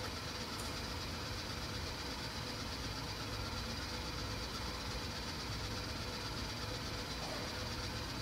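Quiet steady low room hum with a faint thin whine above it.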